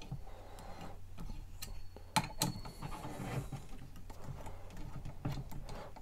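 Ratcheting 5 mm hex driver clicking as it turns a bolt on an aluminium bike wall bracket, snugged only lightly. A run of small, uneven ticks, with two louder clicks a little after two seconds in.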